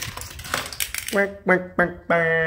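Hot Wheels toy car rattling along a plastic loop track and clattering onto a tile floor in a quick run of clicks, as it fails to stay on the track. Three short voice sounds follow near the end.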